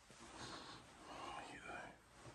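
A faint, soft voice, barely above a whisper, in a quiet room. Faint bending voice tones come in about a second in.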